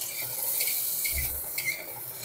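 Potato wedges sizzling in hot oil in a kadai as a spatula turns them over, the spatula scraping the pan a few times.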